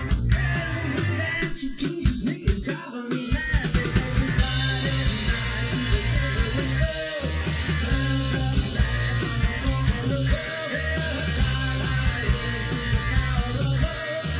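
Live rock band playing: electric guitar over a drum kit and a low bass line. Sharp drum hits stand out for the first few seconds, then the full band fills in with cymbals from about four seconds in.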